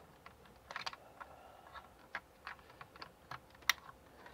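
Irregular light clicks and taps of hands working with computer equipment at a desk, about a dozen of them, the sharpest one near the end.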